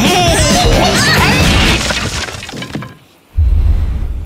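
Lively cartoon soundtrack music with gliding, squealing pitched lines that fades out about two seconds in, followed by a brief near-silence and then a sudden deep thud near the end.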